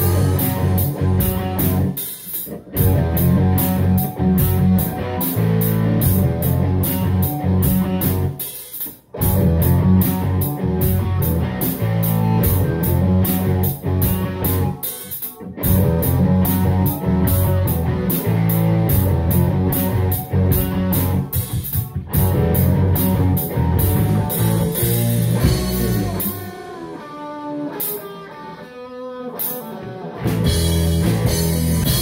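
Live rock band, drum kit and electric guitar, playing a steady beat with short full stops about every six or seven seconds. Near the end the band drops to a quieter passage without the drums, then comes back in loud.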